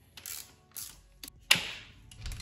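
A mallet knocking on the front axle of a dirt bike's fork to drive it out: some light handling noise, a small click, then one sharp strike about one and a half seconds in.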